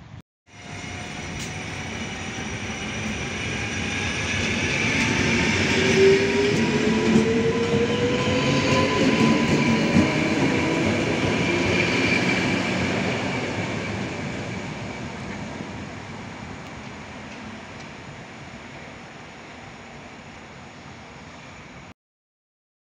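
Electric multiple unit passing close by, its traction motors whining and rising in pitch as it gathers speed over the rumble of its wheels on the rails. The sound cuts in about half a second in, swells to a peak in the middle and fades away towards the end.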